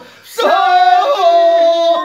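Men singing unaccompanied in a rural Bosnian folk style. After a short breath pause the voices slide up into a long held note, which breaks off near the end.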